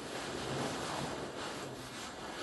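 Faint steady hiss of room tone and recording noise in a pause between spoken sentences.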